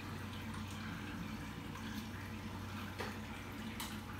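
Steady low hum and trickling water of a running reef aquarium's pumps and filtration, with a couple of faint drip-like ticks near the end.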